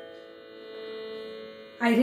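A steady background drone held on one pitch with its overtones, in the manner of a Carnatic music drone. A woman's voice comes in near the end.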